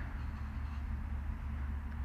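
Steady low rumble with a faint even hiss: outdoor background noise in a pause between words, with no distinct event.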